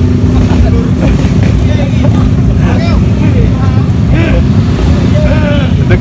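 A motorcycle engine running steadily close by, a loud low rumble with one even tone, with voices faint over it.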